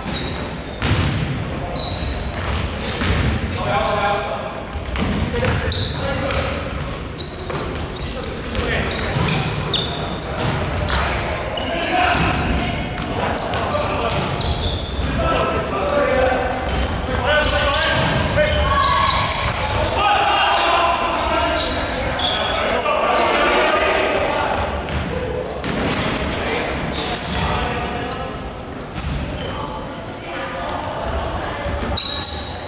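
Sounds of a basketball game in a large, echoing sports hall: a basketball bouncing on the wooden court, with players' voices calling out throughout.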